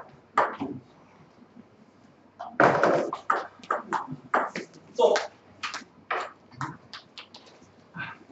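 Table tennis rally: the ball clicks sharply off the bats and table in quick succession, about two hits a second, for roughly five seconds. A louder, longer burst of sound comes just before the exchange, about two and a half seconds in.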